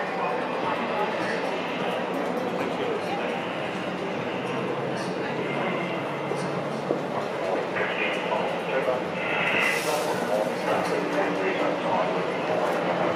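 Indistinct background voices and chatter in a large hall, over a steady low hum.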